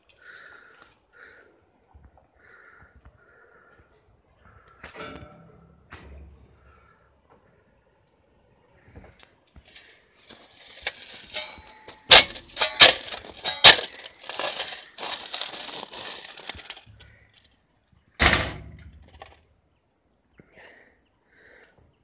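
Frozen, icy snow crunching and cracking: a dense run of sharp snaps and crackles starting about ten seconds in and lasting several seconds, then one more crunch a little later.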